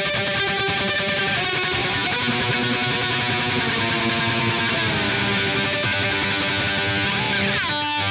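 Improvised music on an eight-string electric violin, built up from looped layers into a dense rock-toned texture of held notes. Near the end a falling glide in pitch leads into a brief break.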